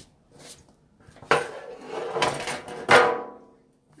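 Thin sheet metal, the metal sign blank, clattering and ringing as it is handled: two loud clatters, the second ringing out over about a second.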